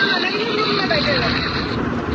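A woman's voice coming faintly through a phone's speaker on a video call, over a steady background hiss.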